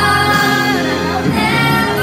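A woman singing into a handheld microphone over a karaoke backing track played through a loudspeaker; her voice slides down in pitch about halfway through.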